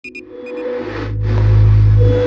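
Electronic intro sting: two short high beeps, a fainter pair half a second later, then a deep bass drone swelling up to full loudness under a steady mid-pitched tone.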